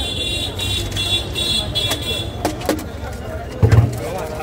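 Street traffic: a vehicle engine runs under about five short, high-pitched horn toots in the first two seconds. A few sharp clicks are heard, and a loud thump comes near the end.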